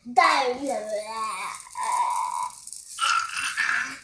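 Toddler's high-pitched wordless babbling vocalisations, gliding up and down, with one held high note in the middle.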